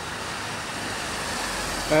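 Road traffic noise, a steady hiss that grows slightly louder.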